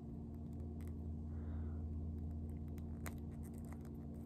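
Faint, scattered small plastic clicks and light scraping as an action figure's hands and a tiny weapon accessory are handled and fitted, over a steady low hum.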